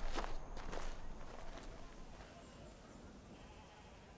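Footsteps of several people walking on a dirt path, with faint animal bleating in the background. The sound fades steadily and is quiet by about two to three seconds in.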